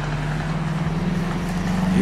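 A motor vehicle's engine running close by: a steady low hum that rises slightly in pitch.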